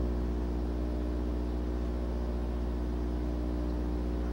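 A steady, unchanging electrical hum with a buzzy stack of overtones, mains hum in the sound system.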